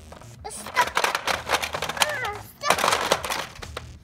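Hard plastic toy Batmobile being handled: a dense run of clicks and clattering knocks from about a second in until shortly before the end, with short squeaky voice sounds mixed in.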